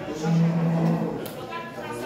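A man's voice holding one steady low hum or drawn-out vowel for about a second, with other voices in a large room around it.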